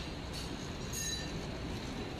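Packaging machinery running steadily on a factory floor: an even mechanical rumble with a faint high whine over it.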